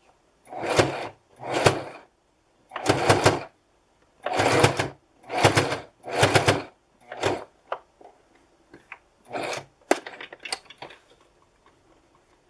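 Electric home sewing machine stitching through folded fabric in short start-stop runs: six bursts under a second each in the first seven seconds, then briefer runs and scattered clicks. The machine is securing the ear loop into the mask's side seam.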